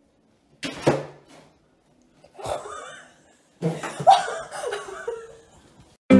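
A person laughing in three bursts, the longest near the end.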